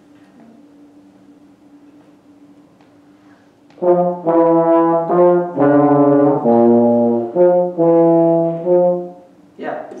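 Two brass instruments play a short blues-scale lick together about four seconds in, a lower part under a higher one, moving through about eight detached notes over roughly five seconds.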